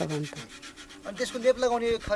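A woman's voice speaking in short phrases, over a steady background of fast, evenly pulsing rasping noise.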